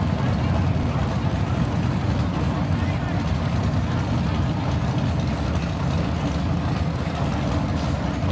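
Drag racing cars' engines running at the starting line, a steady loud low rumble, with crowd voices mixed in.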